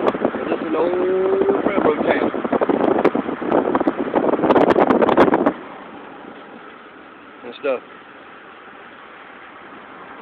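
Wind buffeting the microphone through an open window of a moving car, over road noise. It cuts off suddenly about halfway, leaving quieter car-cabin road noise with one brief pitched call near the end.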